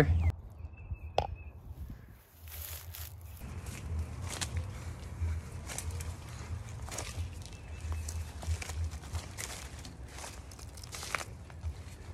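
Scattered rustles, scrapes and knocks of someone climbing through leafy branches over a chain-link fence, starting about two seconds in over a steady low rumble.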